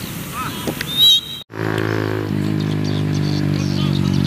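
A short, shrill whistle blast about a second in, the loudest sound, over outdoor field noise and distant voices. After a sudden cut to silence, a steady low drone with a constant pitch takes over.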